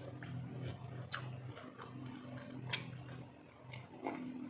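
Small clicks and ticks of a ceramic mug being handled and of quiet chewing, a few separate sharp ticks over a low, steady hum that breaks off now and then.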